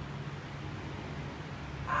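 A pause filled with a steady low hum of room noise, then a young child starts to say the letter sound "a" right at the end.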